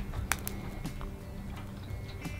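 A few light clicks of a metal utensil against a glass bowl of sautéed steak and vegetables, mostly in the first second, over faint steady tones.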